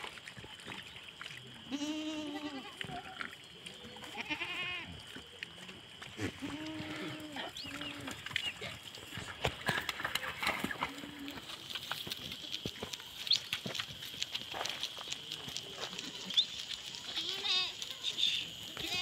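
A herd of goats bleating, with several long calls in the first half, then many short clicks and taps. A steady high whine runs underneath.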